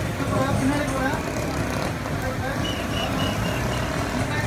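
Street traffic rumble with a crowd of voices talking over it, and a short run of high beeps near the end.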